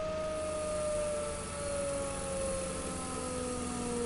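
Pulse motor's 24-pole magnet rotor spinning past its coils with a steady whine, the pitch sliding slowly down as the rotor slows under a hand pressed on top of it. A low electrical hum runs underneath.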